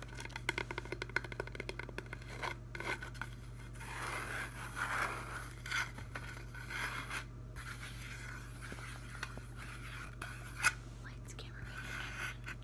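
Fingernails tapping fast on a foam floral wreath ring, a quick run of light clicks, then scratching and rubbing across the foam surface, with one sharper tap near the end.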